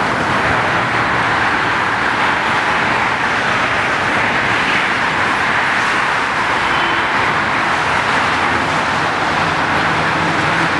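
City street traffic noise: a steady, unbroken rush of passing cars.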